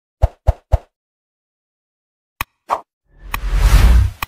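Sound effects of an animated like-and-subscribe button: three quick pops in the first second, then a click and another pop. A loud whoosh with a low rumble builds through the last second.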